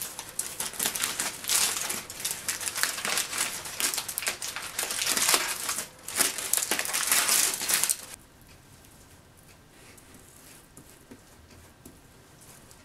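Aluminium foil and plastic crinkling as they are handled and pulled off a sculpture's armature, irregular and busy for about eight seconds, then stopping suddenly.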